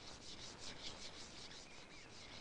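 Faint insect chirping, a steady run of about five short pulses a second, with a few brief bird chirps near the end.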